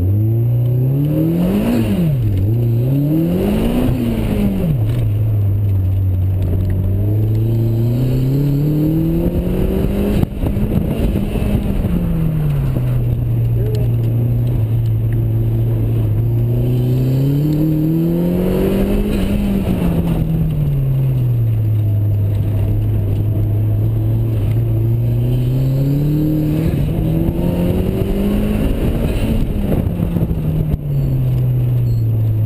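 An open-top car's engine, heard from the cockpit, driven hard through a cone course: the revs climb under acceleration and fall back again and again. It gives two quick rises and drops in the first few seconds, then longer climbs that peak about a third of the way in, near two-thirds and near the end.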